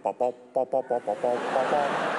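A man vocalizing a quick, rhythmic tune on short repeated syllables, an improvised mock soundtrack. Audience laughter swells in under it about a second in.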